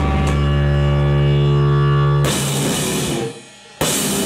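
Live rock band with a drum kit and an electric bass ending a song. A few drum hits lead into a held, ringing chord, which gives way to a noisy wash and then drops off sharply a little past three seconds in.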